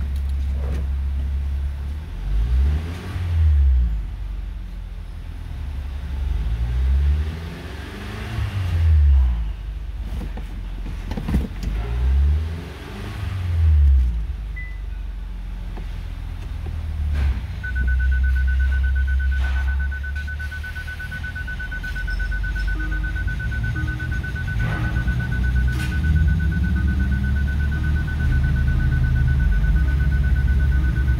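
2018 Kia Stinger's 2.0-litre turbocharged four-cylinder engine, heard inside the cabin, revved three times in neutral, each rev rising and falling over a second or two, then idling steadily. From about the middle on, a steady high electronic tone sounds over the idle.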